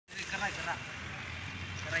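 Short bursts of a man's speech over a steady low background rumble.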